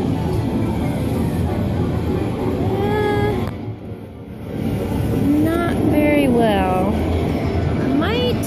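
Arcade din: game-machine music and jingles over crowd chatter, with gliding melodic tones about three seconds in and again past the middle.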